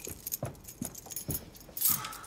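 Small clicks and rustles of things being handled, then near the end a brief loud rattle and creak of a door being opened.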